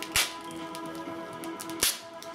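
Silver duct tape pulled off the roll twice in quick, loud rips, about a second and a half apart, as it is stretched across the forehead for a drag tape lift. Faint background music runs underneath.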